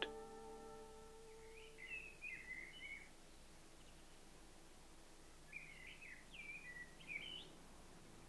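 A small songbird singing two short, quick warbling phrases, faint, the first about two seconds in and the second near the end.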